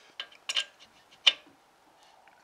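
A few sharp metallic clicks as a single-cylinder Sturmey Archer engine is turned over by hand, its valve gear moving through the exhaust stroke; the loudest click comes just over a second in.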